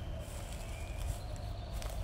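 Outdoor background noise: a steady low rumble with a few faint, thin high tones and a single sharp click near the end.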